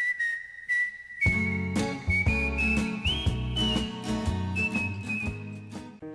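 A whistled melody, starting on one long held note; about a second in, instrumental backing with bass and a beat joins and the whistled line steps upward in pitch.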